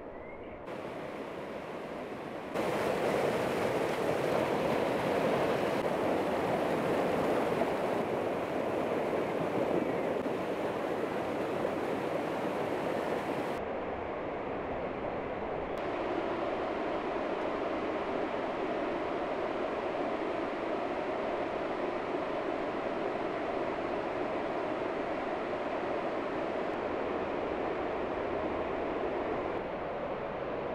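Steady rushing noise of a mountain river flowing over stones, mixed with wind. It steps up in level about two and a half seconds in, then drops a little and evens out from about a quarter of the way through.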